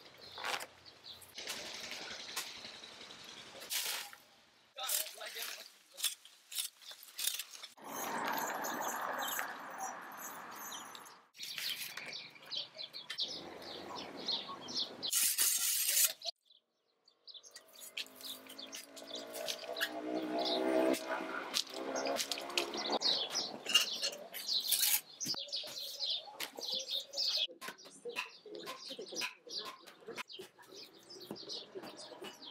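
Outdoor workshop ambience with birds chirping and voices, broken by many sharp knocks as palm midribs are chopped and split with a cleaver on a wooden block.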